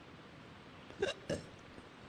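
Two short vocal noises from a man, about a quarter second apart, a second into a pause in his talk, over faint steady room hiss.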